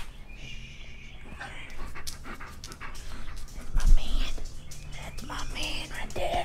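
German shepherd panting close by while it noses around, with scattered small clicks and a low thump about four seconds in.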